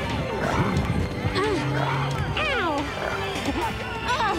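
A person crying out in repeated wordless screams and yells, most falling in pitch, over background music with held notes.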